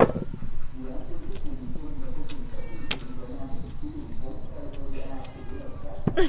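Night insects, crickets, trilling steadily at a high pitch, under low murmured voices, with a couple of sharp light clicks, one at the start and one about three seconds in.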